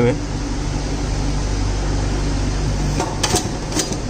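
Steady mechanical hum of refrigeration machinery. Near the end come a few clicks and scrapes of a metal spatula on the steel cold plate.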